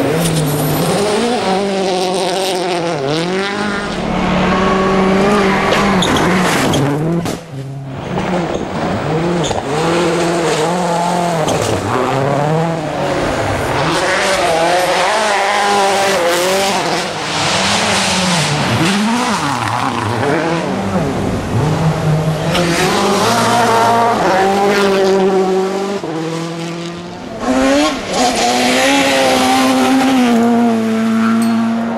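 Rally cars, among them Citroën C4 WRCs, racing past on gravel. Their engines rev up and drop back again and again through gear changes, with tyre and gravel noise. The sound jumps abruptly twice as one car gives way to the next.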